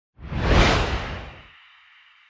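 Whoosh sound effect of a station logo ident: a rush of noise with a deep rumble underneath that swells about half a second in and fades away over the next second.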